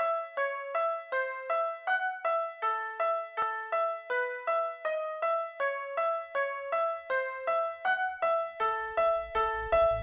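Opening of an electronic track: a lone keyboard plays a repeating melody of short notes, about three a second, each fading quickly. A low bass begins to come in near the end.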